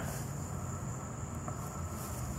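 Steady outdoor background with no distinct events: a constant high insect drone over a low rumble.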